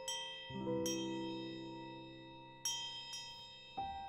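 A brass hand bell rung a few times, each stroke sharp and then ringing on, the bell that was once rung to call a convent to prayers or meetings. Soft piano music comes in underneath about half a second in.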